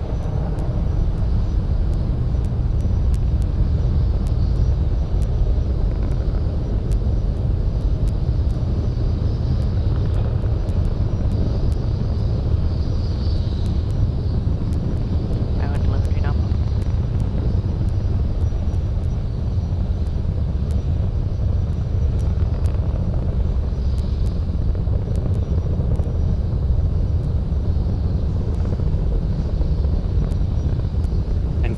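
Falcon 9 first stage's nine Merlin 1D engines at full thrust during ascent: a loud, steady, deep rumble with sparse crackle.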